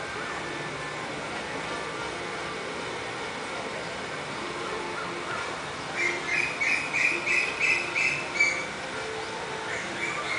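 A run of short high chirps, about three a second, lasting some two and a half seconds past the middle, over a steady low background.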